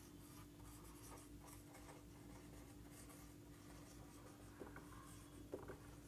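Faint strokes of a marker pen writing on a whiteboard, over a steady low hum. There are a couple of small taps near the end.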